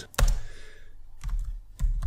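Computer keyboard keystrokes: a keystroke near the start, then a quick run of several keystrokes in the second half.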